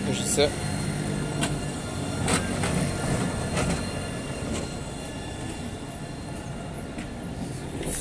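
Low steady mechanical hum from a nearby vehicle, fading after about three seconds, with a few light clicks and knocks over general street noise.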